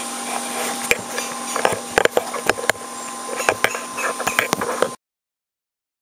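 Camera handling noise: irregular knocks, clicks and rubbing as the camera is gripped and moved, over a steady faint hum. The sound cuts off abruptly about five seconds in, as the recording stops.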